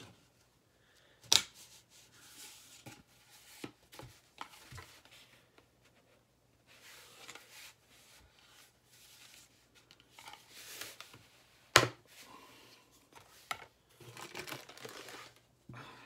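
Cardboard tube being opened by hand: scattered tearing, scraping and crinkling of cardboard and plastic wrap. Two sharp knocks stand out, one soon after the start and a louder one later.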